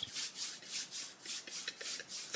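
Hands rubbing together close to the microphone: a faint, quick brushing, about six strokes a second.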